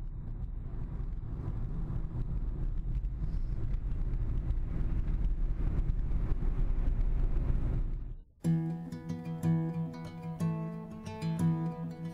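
Steady low rumble of a moving car's road and engine noise, heard from inside the car and slowly growing louder. About eight seconds in it cuts off abruptly and acoustic guitar music begins.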